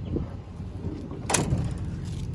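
Low, steady rumble of wind and handling noise on a handheld microphone, with one sharp knock a little past halfway.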